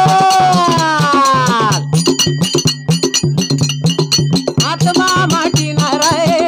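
Devotional bhajan music. A man's voice holds one long sung note that falls away a little under two seconds in; then a two-headed hand drum and small brass hand cymbals keep a steady beat on their own, until the singing comes back near the end.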